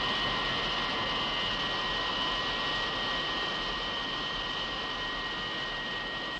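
Sci-fi spacecraft flight sound effect: a steady jet-like rushing hum with two high whistling tones held on top, easing off slightly toward the end.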